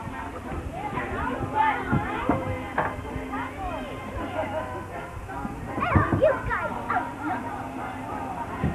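Children's high voices calling and chattering over music playing in the background, with a few short knocks.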